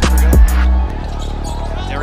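Hip-hop background music with a heavy bass beat and sharp percussive hits, which cuts off about a second in and leaves a quieter, steady background.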